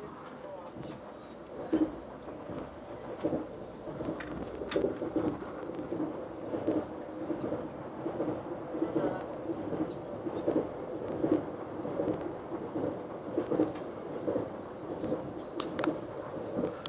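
Running noise inside a Sapsan high-speed train carriage at speed: a steady rumble with uneven swells. It grows louder about four seconds in as the train goes onto a steel truss bridge.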